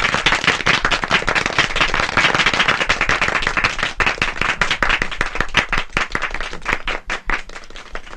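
A crowd applauding, a dense patter of hand claps that thins out to scattered claps near the end.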